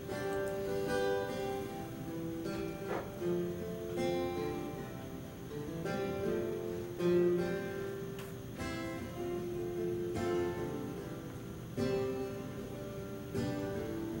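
Slow instrumental music on strummed acoustic guitar, sustained chords changing every second or two.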